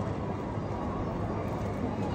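Steady background noise of a large airport terminal hall: an even low hum with no distinct events.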